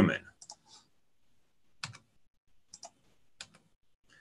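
Computer keyboard clicking: a handful of short, sharp clicks at irregular intervals, the later ones in quick pairs.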